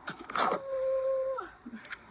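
A brief rattle, then a woman's whimper held at a steady high pitch for about a second, dropping as it ends.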